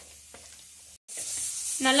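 Hands kneading soft bhatura dough in a plastic bowl, with faint sticky squelches and small clicks. After a brief dropout about halfway through, a steady high hiss comes in and grows louder.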